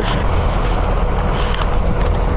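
Steady low rumble of vehicle engines and traffic, with a faint steady hum running through it.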